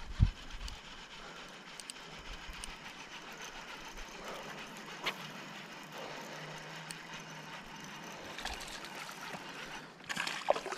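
Steady rushing of river water, with a sharp knock right at the start and a thin click about five seconds in.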